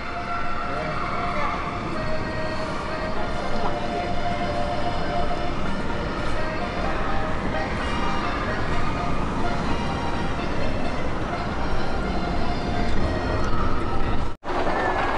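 Outdoor crowd ambience: indistinct voices and faint music over a steady low noise.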